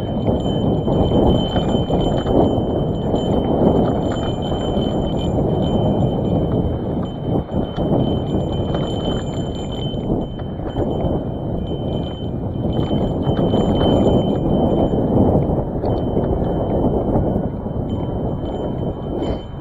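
Old hardtail cross-country mountain bike rolling fast down a rough dirt track: skinny tyres crunching over gravel and the bike clattering and rattling over bumps in a continuous rumble.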